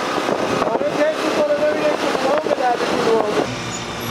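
A steady rushing noise of vehicles moving along a road, with voices calling over it; the rush drops away about three and a half seconds in.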